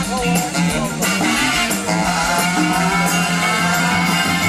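Live band playing a blues-rock number, electric guitar to the fore over a steady pulsing bass line.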